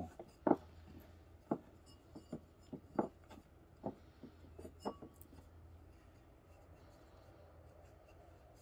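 Sphagnum moss being pressed by hand into a small pot around an orchid seedling: soft rustling and about six short taps in the first five seconds, then only a faint low hum.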